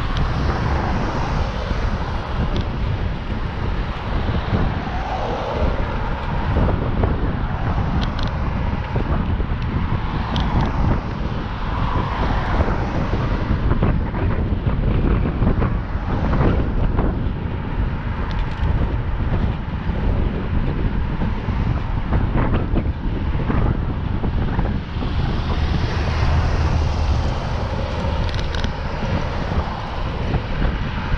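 Wind rushing steadily over the microphone of a camera on a moving bicycle, with road traffic passing alongside.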